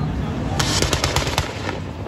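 Car engine held on a two-step launch-control rev limiter, its exhaust firing a rapid string of loud pops and bangs, about eight or nine in just over a second, starting about half a second in over the engine's steady rumble.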